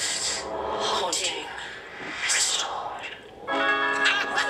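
Eerie sound effects from the Haunted Mansion box's phone app: breathy, rasping swells about a second apart. Near the end, music with sustained notes sets in.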